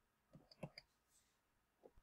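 Near silence with a few faint, short clicks: a quick cluster of about four in the first second and one more near the end.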